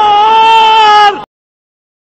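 A loud, high, voice-like wail held on one steady pitch for about a second, then cut off abruptly.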